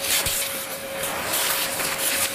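Vacuum cleaner running, its hose nozzle sucking debris out from around the carpet tack strip: a steady rushing noise with one held whine.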